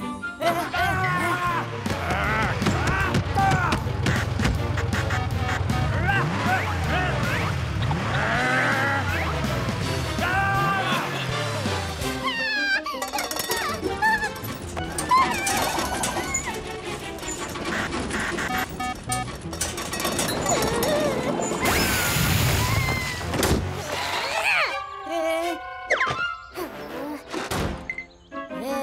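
Animated cartoon soundtrack: background music runs throughout, mixed with the characters' wordless whimpers and vocal sounds and a few short comic sound effects.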